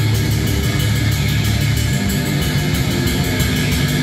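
A heavy metal band playing live and loud, with distorted electric guitar, bass guitar and a drum kit going without a break.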